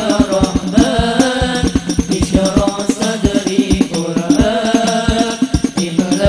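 Hadrah ensemble: several male voices sing an Islamic devotional song in unison through microphones, over fast, steady strokes on large frame drums (rebana).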